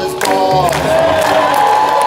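A live theatre audience cheering over keyboard accompaniment that keeps vamping between verses of an improvised song.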